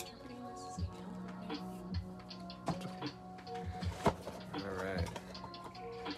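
Background music, with scattered taps, knocks and rustles as a cardboard booster box is opened by hand.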